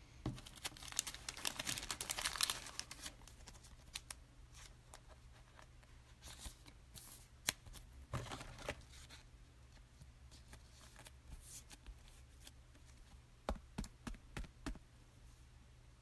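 Hands handling trading cards and a clear plastic card holder. There is faint rustling for the first three seconds or so, then a few light clicks and taps scattered through the rest.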